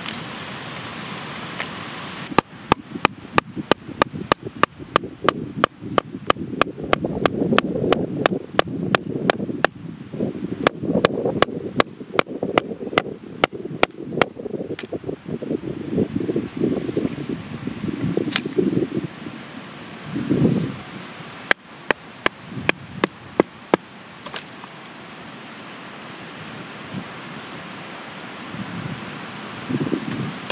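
A large knife blade scraping and shaving a piece of pine in quick repeated strokes, each stroke ending in a sharp click, about three to four a second. The strokes stop about halfway through and come back in a short run a little later.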